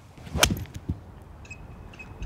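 A golf iron striking the ball off the turf: one sharp crack about half a second in, with a smaller knock a moment later.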